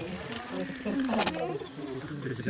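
A flying insect buzzing close to the microphone, its pitch wavering.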